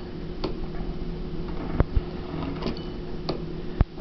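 A metal fluted pastry wheel (rotella) being run through ravioli dough on a cloth-covered table to cut the ravioli apart: about four sharp clicks and knocks over a steady low hum.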